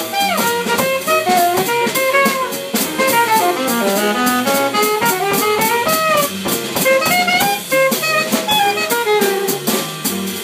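Live jazz: a saxophone plays a busy solo line of quick, moving notes over plucked upright double bass and a drum kit, with cymbals keeping a steady beat.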